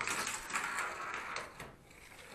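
Steel tape measure being extended, its blade sliding out of the case, fading out after about a second and a half.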